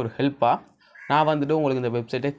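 Only a man's speech: a few short syllables, a brief pause, then a long drawn-out stretch of talk.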